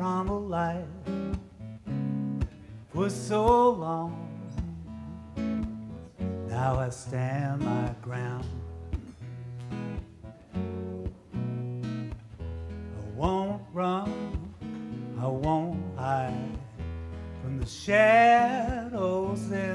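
Acoustic guitar played live with a man singing over it in short phrases, a few seconds apart, and the guitar carrying on between them.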